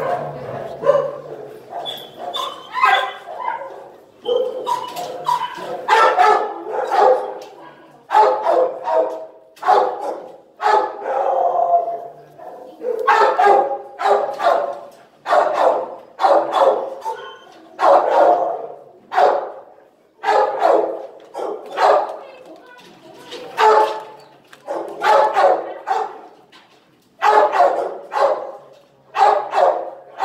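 Dogs barking over and over, short barks coming every half second to a second without a break, the constant din of a shelter kennel.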